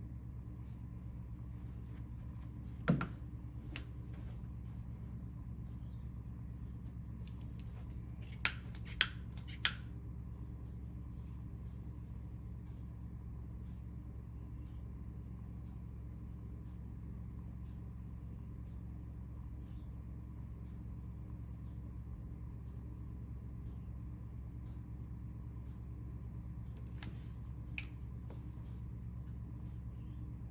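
Steady low electrical hum with a few sharp small metal clicks: one about three seconds in, three close together around nine seconds, and a couple more near the end, as a wire is handled in the crocodile clips of a helping-hands stand.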